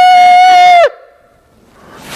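A shofar (ram's horn) blast imitated by blowing into cupped hands: one steady, high, horn-like note that cuts off abruptly just under a second in.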